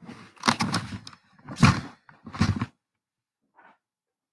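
Handling noise from the recording device as it is picked up and moved: three bursts of thumps and rubbing against the microphone in the first three seconds, then a faint knock near the end.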